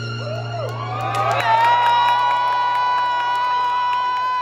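Fiddle holding a long, steady high final note over a low ringing acoustic guitar chord as the song closes, with cheering from the audience.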